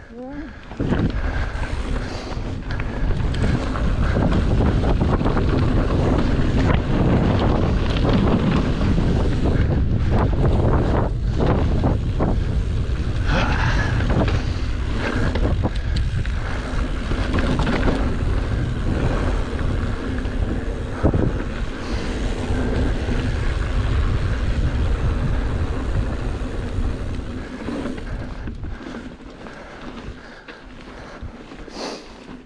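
Wind buffeting the microphone of a bike-mounted camera while a mountain bike rides fast down dirt singletrack, with scattered clicks and knocks from the bike and tyres over rough ground. The wind dies down over the last few seconds.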